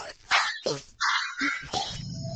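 A dog barking a few short times in quick succession.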